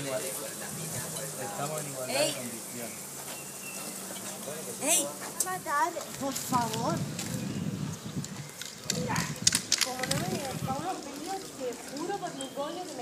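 Indistinct voices talking in the background, with a few sharp clicks and short hisses among them.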